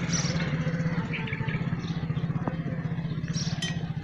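A motorcycle engine running at a steady low speed: a continuous low drone with a fast, even pulse.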